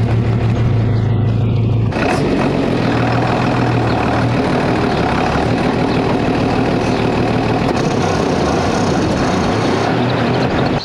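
1972 Bedford bus engine running while the bus is reversed into a shed. It is a steady low note up close for about two seconds, then changes abruptly to a rougher, noisier engine sound.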